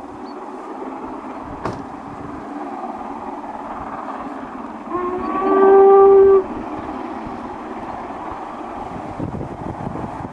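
Steam whistle of LMS Princess Royal class Pacific 6201 Princess Elizabeth, blown once about halfway through for about a second and a half, starting a little lower and rising as it opens fully. Behind it runs a steady rushing noise from the passing train.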